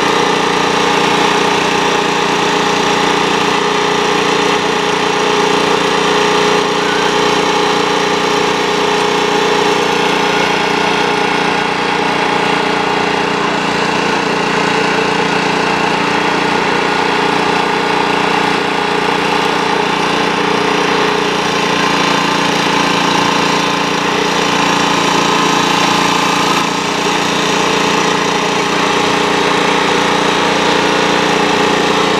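Small petrol engine of a firefighters' hydraulic rescue-tool power unit running steadily at a constant speed.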